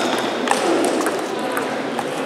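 Table tennis rally: the celluloid ball clicking off the bats and the table, a few sharp ticks in quick succession, the clearest about half a second in.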